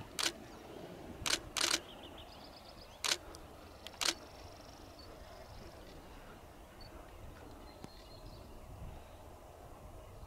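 Camera shutter firing: about five sharp clicks spread over the first four seconds, then only a faint steady outdoor background.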